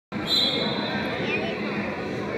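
Indoor soccer game in a hall: players' voices over the thud of the ball on the hard court, with a high shrill tone lasting about a second near the start.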